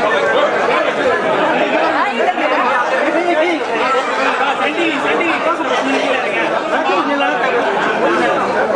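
Crowd chatter: many men talking over one another at once, a dense, steady babble of voices.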